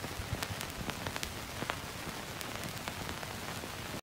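Old-film crackle effect: a steady faint hiss with scattered sharp clicks and pops.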